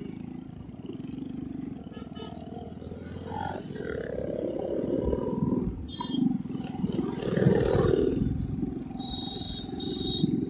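Heavy wind buffeting and low rumbling on a moving microphone, swelling louder in gusts from about four seconds in. A faint high tone enters near the end.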